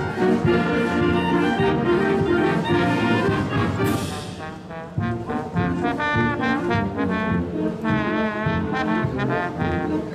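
High school concert band playing, with brass to the fore. About four seconds in, a crash rings out as the band drops away, and the full band comes back in about a second later.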